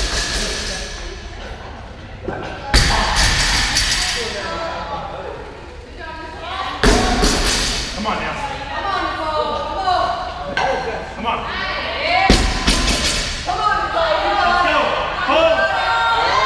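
Loaded barbells with rubber bumper plates dropped onto a rubber gym floor: three heavy thuds a few seconds apart, echoing in a large hall, with voices between them.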